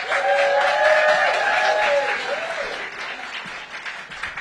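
Audience applauding, loudest in the first two seconds and then fading, with someone's held cheer sounding over the opening couple of seconds.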